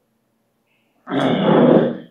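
A man clearing his throat once, a harsh, rasping sound about a second long, starting about a second in.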